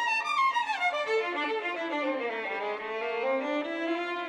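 Violin music: the melody runs down from high notes to low ones over about two seconds, climbs back, and settles on a held note near the end.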